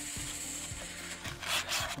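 Abrasive sheet rubbing back and forth on the bare metal mounting face of a car's wheel hub, scrubbing off rust so the wheel will seat flat and not wobble; a harder, louder stroke comes about a second and a half in.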